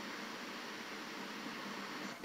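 Steady faint hiss of background noise, with no distinct sound event.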